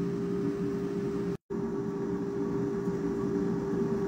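Steady mechanical hum with a constant low tone, broken once by a brief dropout to silence about a second and a half in.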